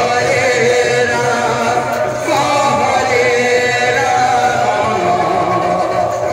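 A devotional sankirtan song, sung by several voices in chorus over instrumental accompaniment.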